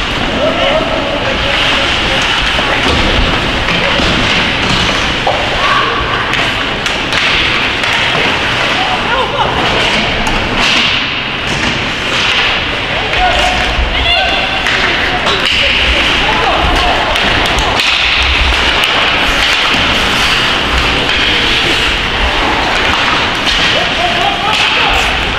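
Ice hockey game sounds: indistinct shouts from players and onlookers, with repeated knocks of sticks, puck and bodies against the boards.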